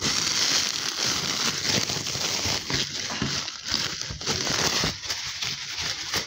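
Clear plastic wrapping around a block of upholstery foam crinkling and rustling as it is handled, a continuous irregular crackle.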